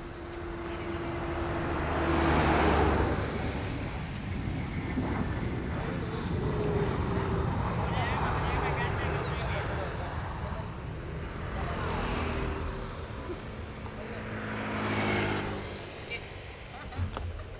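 Airbus A321-200 jet airliner landing: its engines swell to a loud peak as it passes close, about two to three seconds in. The engine noise then carries on through the touchdown and roll-out, swelling twice more near the end.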